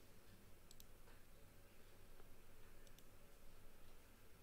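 Near silence with a handful of faint computer mouse clicks, a couple close together about a second in and another pair near three seconds in, over a low steady room hum.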